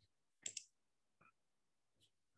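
A single quick computer mouse click, its press and release heard as two close ticks about half a second in, with a fainter tick later; otherwise near silence.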